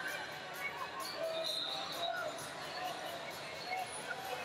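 Wrestling shoes squeaking on the mat in short, scattered squeaks as the wrestlers grapple in a standing tie-up, over a murmur of distant voices.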